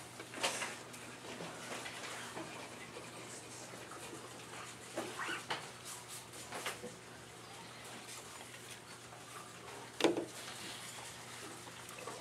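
Quiet classroom room tone: a low steady hum under scattered faint, brief sounds, the sharpest about ten seconds in.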